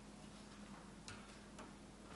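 Near silence: room tone with a faint steady hum and two faint clicks, about a second in and again half a second later.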